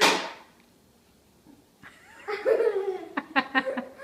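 A short, sharp breathy burst of voice at the start, then laughter in quick pulses from about two seconds in.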